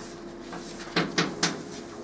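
Chalk striking a blackboard while numbers are written: three short, sharp knocks about a second in.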